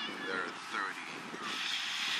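Voices of people on a football sideline talking and calling out, with a steady outdoor hiss behind them that grows near the end.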